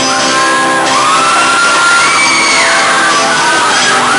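An acoustic guitar playing, with high-pitched screams and whoops from the audience rising and falling over it.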